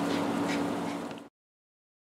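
A steady low hum over faint hiss, fading slightly and then cutting off abruptly into silence about a second and a quarter in.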